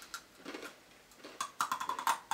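A snack being bitten and crunched close to the microphone: a faint crack early, then a quick run of crackling clicks in the last half second.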